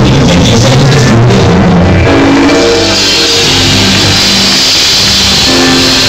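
Loud live band music with drums and held chords, playing on without any voice.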